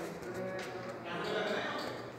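People's voices talking, with a few faint knocks.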